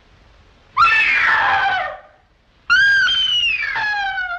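A woman screaming twice, two long high cries that each fall in pitch, the second starting about a second after the first ends and trailing off lower.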